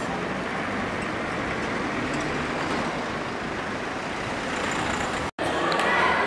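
Steady outdoor street ambience with road traffic noise. It cuts out for a moment near the end and gives way to the chatter of a crowd in a large, echoing lobby.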